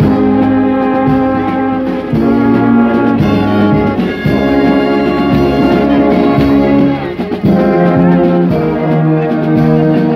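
Brass band playing a hymn tune in long held chords, the phrases breaking off briefly every two to three seconds. The horns are loud and close.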